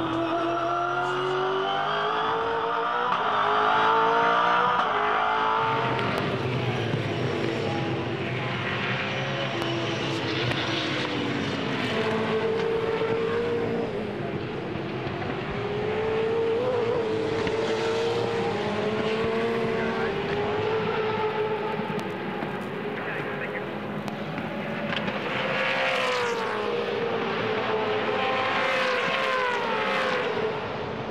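V8 Supercar race engines at racing speed. First comes the in-car sound of one car's V8 climbing in pitch through several quick upshifts. Then several cars' engines are heard from trackside as the pack runs past, the notes rising and falling, with a falling sweep near the end.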